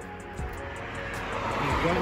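A car driving past on the road, its tyre and engine noise growing louder toward the end.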